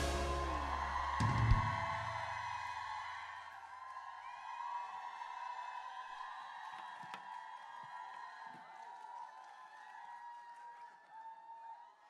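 The end of a live pop song: the last chord and a deep bass hit about a second in ring out and fade over the first few seconds. Faint audience cheering carries on under them and thins out toward the end.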